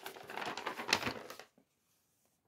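A printed paper chart sheet rustling and crinkling as it is picked up and held out, for about a second and a half, then cutting off to silence.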